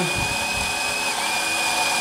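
Precision GSP electric burr coffee grinder running, grinding beans into a portafilter: a steady whir with a high whine, which cuts off at the end when grinding is stopped by eye.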